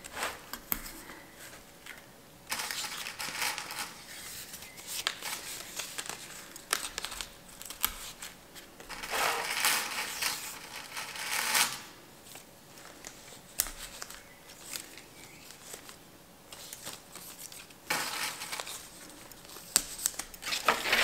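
Stiff aspidistra leaves rustling and crackling as they are handled, bent into loops and pinned into floral foam, in several bursts a few seconds apart with small clicks between.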